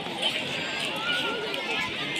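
Crowd chatter: many people talking at once outdoors, overlapping voices with none standing out, at a steady level.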